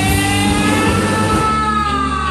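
Live rock band playing loudly: one long high note slides up and then slowly falls back, over the bass and drums.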